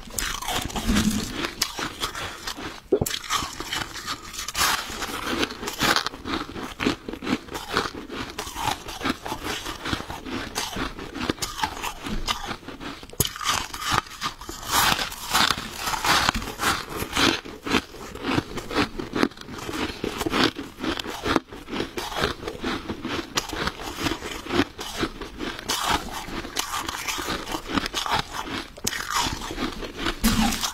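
Soft freezer frost being bitten and chewed close to a clip-on microphone: continuous crisp crunching, many crunches each second.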